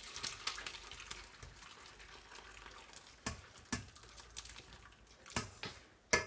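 Hot vegetable stock being poured slowly from a stainless steel pot through a metal colander into a saucepan, a faint steady trickle. Three sharp clicks come a little past halfway and near the end, likely metal knocking against metal.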